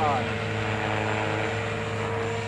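JR Propo Forza 450 radio-controlled helicopter hovering inverted, its motor and rotor giving a steady whine over a low hum.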